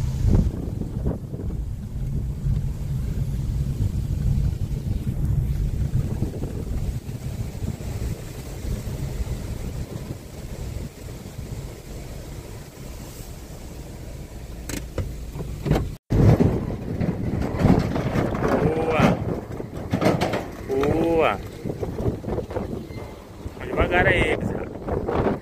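A vehicle driving on a dirt track, heard from inside the cab as a steady low rumble. After a sudden cut about two-thirds of the way in, open-air wind noise takes over, with several short calls that rise and fall in pitch as cattle are being moved.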